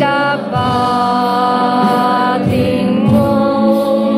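Live worship music: a woman singing a slow Tagalog worship song into a microphone, holding long notes, over electronic keyboard and electric guitar accompaniment.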